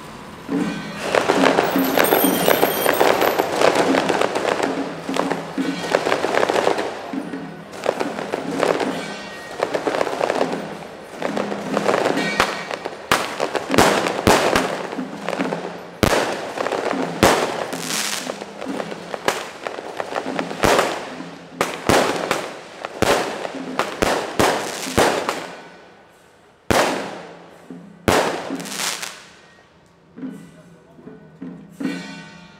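Strings of firecrackers going off: a dense, continuous crackle from about a second in, giving way after about twelve seconds to a run of separate loud bangs with a short lull near the end.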